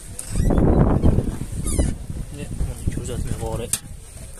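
Boot lid of a Gentra sedan being unlatched and lifted, with a loud rush of handling noise in the first second and a brief high squeak, then voices in the background.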